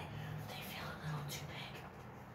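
A woman's voice, low and indistinct, with soft breathy hiss between the sounds.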